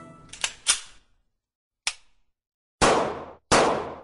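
Cartoon gunshot sound effects for the pirates' big gun: a short sharp crack, then two loud bangs less than a second apart, each trailing off quickly.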